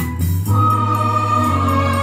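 Electronic keyboard playing a Christmas carol. About half a second in, a held choir-like chord begins and sustains.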